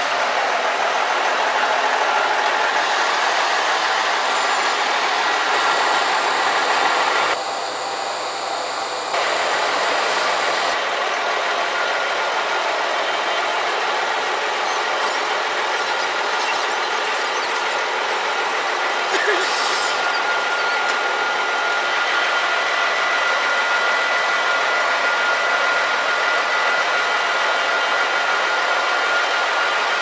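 Diesel train running close by: a steady mechanical engine and rail noise, with a thin high whine held through the second half. The sound drops briefly about eight seconds in.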